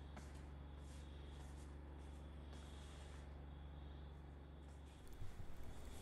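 Faint steady low hum with a few overtones that stops about five seconds in, followed by a few faint rustles.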